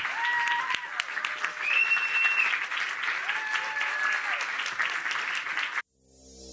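Audience applauding, many hands clapping at once, with a few voices calling out over it. It cuts off suddenly near the end.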